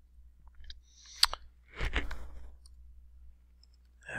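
A sharp computer mouse click about a second in, then a short run of keyboard taps near the middle as a word is typed.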